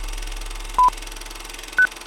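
Film-leader countdown beeps: short electronic tones a second apart, one about a second in and a higher-pitched one near the end, over a steady hiss.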